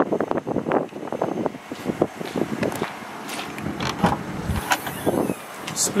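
A run of short knocks and scuffs of someone walking up to the car, then a Renault Kadjar's tailgate being unlatched and lifted open, with a low thump about four and a half seconds in.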